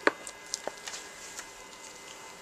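A few light clicks and taps, the sharpest right at the start, as the clear plastic lid of a gel electrophoresis tank, with its electrode leads, is set in place.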